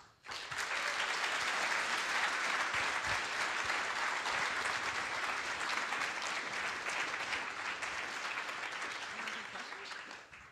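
Audience applauding: dense, steady clapping that starts about half a second in and eases off slightly near the end.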